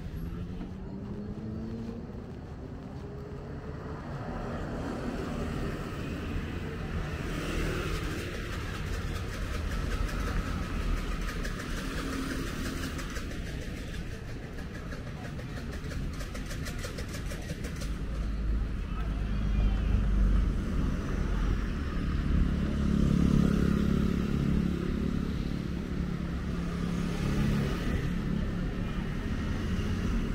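Road traffic of cars and motorbikes passing close by. An engine's note rises as a vehicle accelerates in the first couple of seconds, and a louder, deeper engine rumble passes in the second half.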